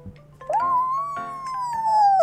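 A paper party blower sounded as a long toot: it starts about half a second in, rises quickly, then slides slowly down in pitch, over light background music.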